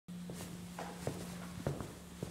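Footsteps on a concrete shop floor approaching, a series of soft, irregular steps about two a second, over a steady low electrical hum.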